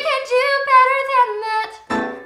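Woman singing solo in musical-theatre style, a held line with vibrato and no accompaniment under it. It breaks off near the end, followed by a short chord that dies away.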